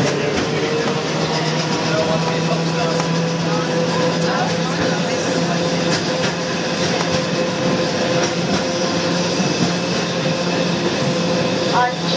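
English Electric tram car running along street rails, heard from the motorman's platform: a steady running noise with a held whine, and scattered clicks from the wheels on the track.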